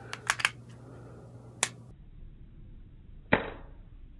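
Metallic clicks from a striker-fired pistol being worked during dry fire: three quick clicks near the start as the slide is handled, another single click about a second and a half in, then the loudest, a sharp snap with a brief ring about three seconds in as the trigger breaks on a chamber holding a laser training cartridge.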